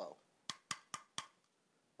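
Four sharp plastic clicks, about a quarter second apart, from a hollow, thin-walled 3D-printed part being squeezed and flexed in the hand.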